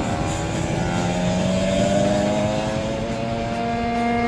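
Racing kart engine running at high revs, its note climbing slowly and then holding steady.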